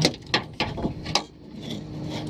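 Hands working inside an open car door cavity on the window mechanism: several sharp clicks and knocks of metal and plastic parts over the first second or so, then it goes quieter.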